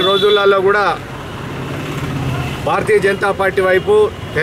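A man speaking in a loud, close voice. He pauses for about a second and a half, and in the pause a steady low rumble comes through.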